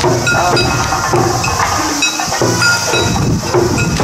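Bon odori folk song played loudly over an outdoor loudspeaker, with sharp strokes that fit the dancers' hand claps.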